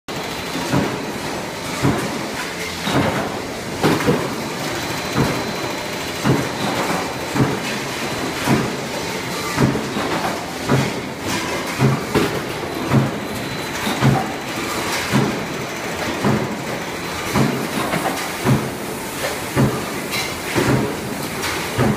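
Sheet-metal forming machinery running: steel-strip roll-forming lines and mechanical power presses, with a steady machine din and a heavy stroke repeating about once a second.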